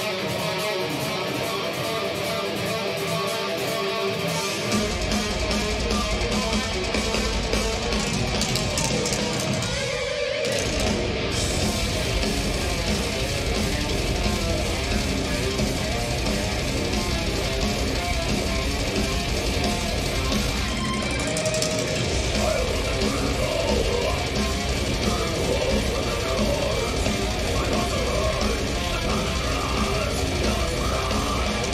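Live heavy metal band playing with loud distorted electric guitars. A guitar riff plays with little low end at first, then the bass and drums come in about five seconds in. After a brief break about ten seconds in, the full band plays on.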